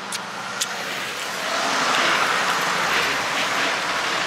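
A road vehicle passing along the street, its noise swelling to a peak about two seconds in and easing off, with a couple of short clicks in the first second.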